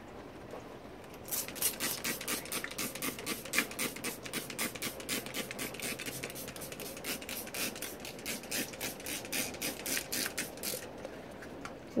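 Plastic trigger spray bottle being pumped quickly, a fast even run of hissing squirts at about four a second, misting water onto a burlap cover. The spraying starts about a second in and stops near the end.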